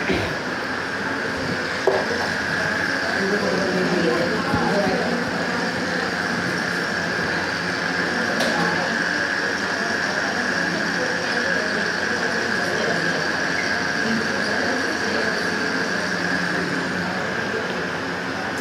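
Marker writing on a whiteboard in faint strokes over a steady room hum, with a single knock about two seconds in.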